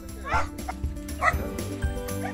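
Small dogs giving two short, high yips, one near the start and one just past the middle, over background music with steady held notes.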